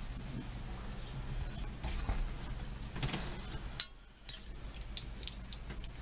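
Quiet handling noise of a Leatherman multitool's pliers working a chin strap loop on a steel M1 helmet, with two sharp clicks about four seconds in, half a second apart.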